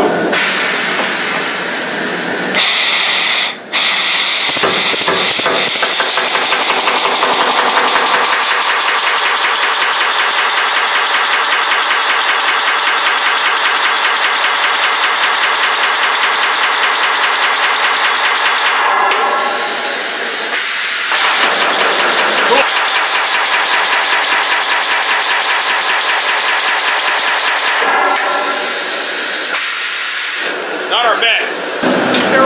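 1880 Allen portable pneumatic riveter heading a red-hot 3/4-inch rivet. The hiss of compressed air comes first, then a fast, steady rapid-fire hammering that runs for over twenty seconds and stops shortly before the end.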